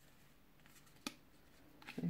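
Near silence broken by one short, sharp click about a second in, with a couple of fainter ticks around it, from hands working a small cardboard box with in-ear earphones seated in it.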